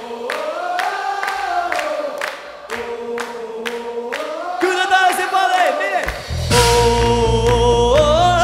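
Audience clapping in time, about two claps a second, and singing the melody together as a choir. About six seconds in, the full band comes back in and the music gets louder.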